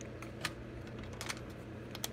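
A few light plastic clicks and knocks as the chainsaw's orange top cover is picked up and brought over to the saw body.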